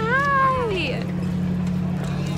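A woman's drawn-out, excited squeal of greeting, rising and then falling in pitch and lasting under a second, over a steady low hum.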